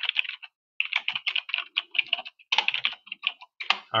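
Typing on a computer keyboard: quick, irregular keystrokes with a brief pause about half a second in.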